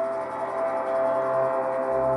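Ambient background music of sustained, bell-like tones; a low bass note comes in near the end.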